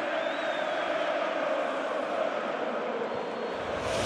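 Steady noise of a large football stadium crowd, a dense, unbroken mass of voices, with a faint high whistle in the first second.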